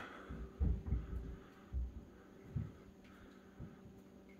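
Four or so soft low thumps, roughly a second apart, over a faint steady hum: handling noise from a handheld phone camera being moved.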